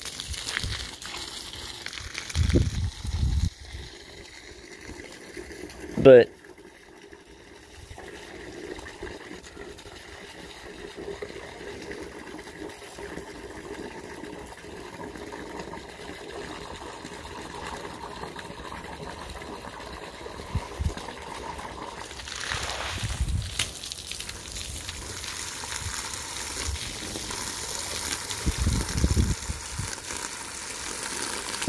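Garden hose spraying water onto wet soil and plants, a steady splashing hiss that grows louder and brighter in the last third. A short, loud rising squeal comes about six seconds in, and a few low bumps come early and near the end.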